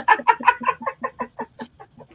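A woman's cackling laughter: a quick run of short "ha" bursts that grows fainter and dies away over about two seconds.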